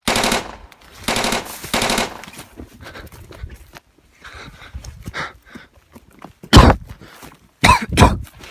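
Three short bursts of rapid automatic gunfire in the first two seconds, then scattered weaker cracks, with a single loud shot about six and a half seconds in and another loud burst near the end.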